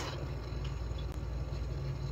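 Room tone: a steady low hum with faint background hiss, and no distinct event.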